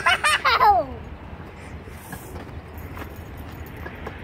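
A short burst of laughter in the first second, ending in a falling glide, then only a low, steady background noise.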